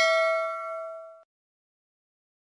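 Notification-bell 'ding' sound effect, struck just before, ringing on in several clear tones that fade and then cut off abruptly about a second and a quarter in.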